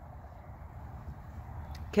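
Quiet outdoor background noise: a low, steady rumble with no distinct event, with a couple of faint ticks near the end.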